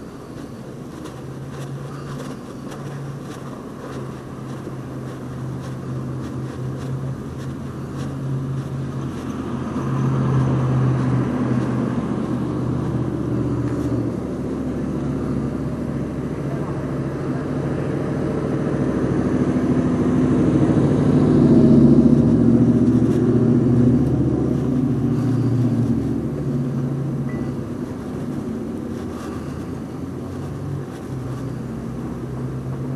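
Car engine and road noise heard from inside the cabin, a steady low hum that builds to its loudest about twenty seconds in and then eases off.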